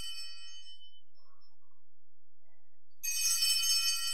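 Altar bells rung at the consecration as the host is elevated: a high, many-toned ringing dies away in the first second, and a fresh peal of the small bells starts about three seconds in.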